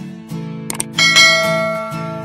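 Subscribe-button sound effect: a quick double mouse click, then a bright bell chime about a second in that rings and fades, over background guitar music.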